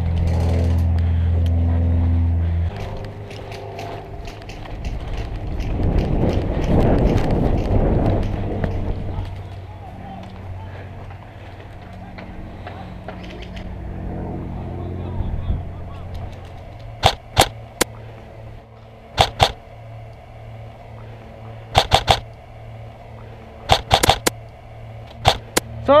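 Airsoft rifle firing sharp single shots in quick pairs and triples, about five groups spread over the last nine seconds. Before that, a steady low hum for the first couple of seconds, then a stretch of rustling handling noise.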